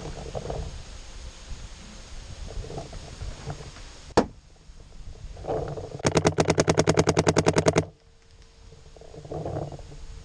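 Paintball marker firing: one single shot about four seconds in, then a rapid string of about twenty shots at roughly ten a second lasting just under two seconds.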